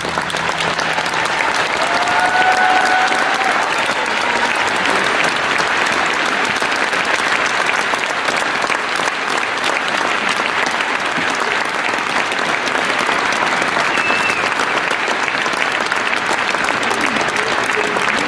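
Large concert audience applauding steadily after a song ends.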